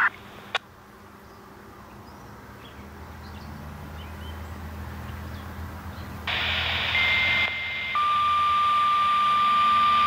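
Radio activation tones: the radio channel opens with a hiss, then a short higher beep is followed by a lower steady tone held for about three seconds. These are the tones sent to set off the tornado warning signal on the outdoor siren. Earlier, a faint low rumble swells and fades.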